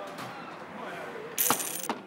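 Coins dropped onto a bar counter about one and a half seconds in, landing with a brief bright metallic jingle.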